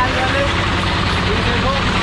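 Tata bus's diesel engine idling steadily at close range, a constant low rumble, with people's voices over it in the second half.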